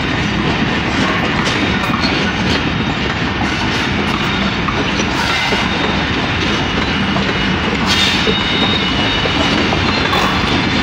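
Tezgam Express passenger coaches passing at speed: a loud, steady rumble of steel wheels on rail with clickety-clack over the rail joints. A faint high squeal rises from the wheels about eight seconds in.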